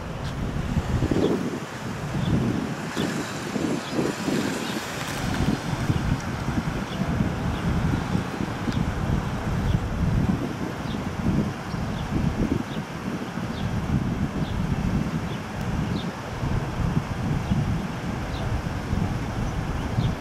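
Wind buffeting the camera's microphone: an uneven, gusting low rumble that rises and falls throughout. Faint short high chirps recur about once a second underneath.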